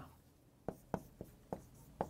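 Marker pen writing letters on a whiteboard: about four faint, short ticks as the tip strikes and strokes the board.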